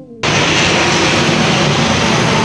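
The last falling notes of an intro jingle, then a sudden cut to loud, steady outdoor street noise: an even rushing sound with a faint hum in it.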